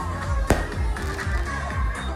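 Music with a steady beat, cut through by one sharp firework bang about half a second in.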